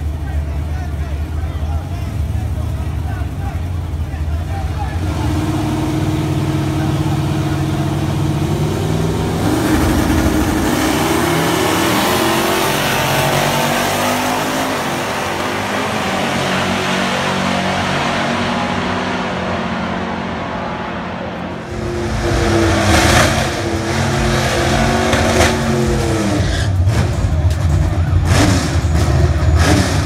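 Big-rim donk drag cars idling at the start line, then launching and accelerating down the strip with rising engine notes, over crowd voices. About two-thirds through, after a cut, another car's engine revs hard at the line.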